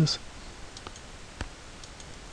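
Computer mouse clicking a few times, faint and sharp, the clearest click about halfway through, as a step of the simulation is run.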